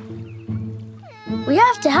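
Background music holding soft sustained low notes, then, from a little past the middle, a cartoon character's whiny vocal cry rising in pitch.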